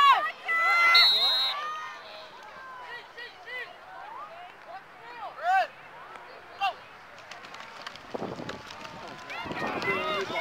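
Shouting from sideline spectators and coaches at a youth football game: loud calls in the first couple of seconds, then scattered fainter shouts and a few sharp clicks.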